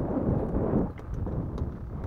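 Wind buffeting the microphone at sea, a low rumble that eases off about a second in, with a few faint ticks after.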